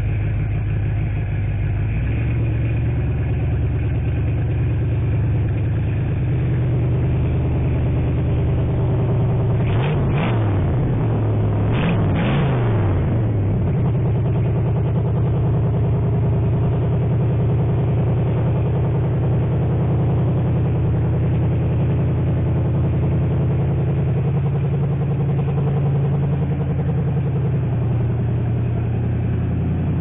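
1970s Ford F100 pickup's V8 engine running steadily at idle, its pitch briefly rising and falling twice about a third of the way in.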